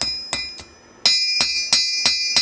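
Blacksmith's hammer striking metal on an anvil, about three blows a second, each with a bright metallic ring; the blows grow much louder about halfway through.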